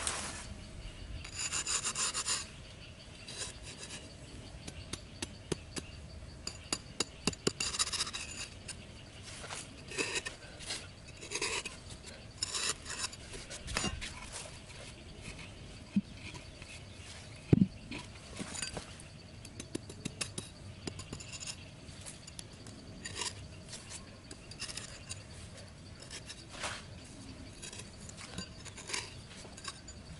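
Bursts of scraping and rasping with scattered clicks and taps, from a machete blade and a wooden cutting board being worked against sandy soil and bamboo sticks. One sharper knock sounds a little past halfway.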